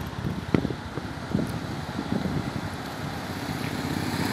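Motorcycle engines: one fading off after passing, and another approaching and growing steadily louder near the end.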